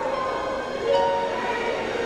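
Gospel choir singing, holding long sustained chords, with a new chord coming in about a second in.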